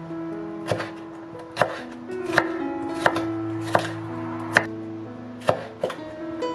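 Chef's knife slicing bell peppers into strips on a wooden cutting board: about eight separate knocks of the blade against the board, roughly one a second.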